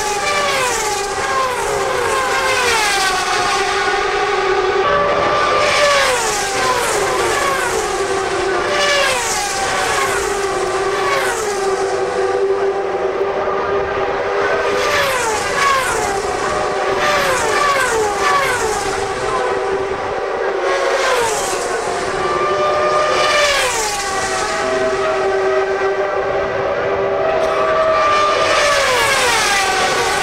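CART Champ Car race cars with turbocharged V8 engines passing at speed one after another, each high engine note dropping in pitch as it goes by, over a steady engine drone.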